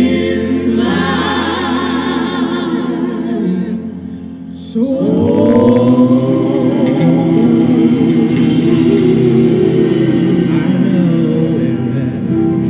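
Gospel singing: a woman's voice with strong vibrato over piano. It dips briefly about four seconds in, then comes back fuller with more voices.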